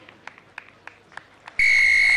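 A rugby referee's whistle, one loud, steady blast of just over half a second near the end, picked up close to the microphone. It signals that the penalty kick at goal has been successful.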